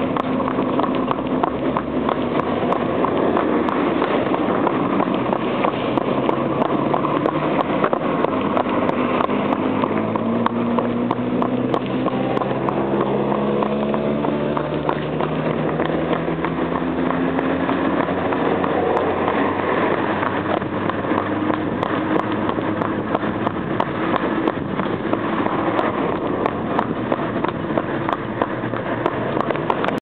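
Horse-drawn carriage on a paved road: a hackney horse's hooves clip-clopping on the asphalt, with the carriage's wheels and fittings rattling steadily. A hum rises slowly in pitch through the middle.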